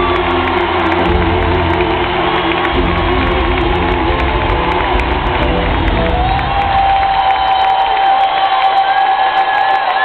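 Live soul performance with a female lead singer over a cheering, whooping crowd. The band's low end drops away about three seconds in, and from about six seconds one long note is held until it falls away near the end.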